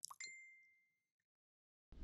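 Sound effects of an on-screen like-and-subscribe animation: a mouse click, then a bright bell ding that rings out for about half a second.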